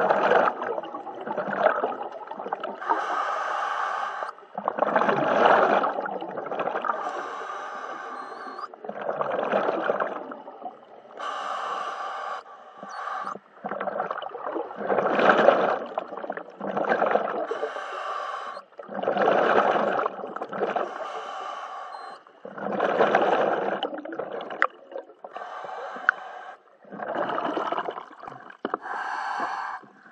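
A diver breathing through a scuba regulator underwater: hissing inhalations alternate with bubbling, rumbling exhalations, about one breath every four seconds.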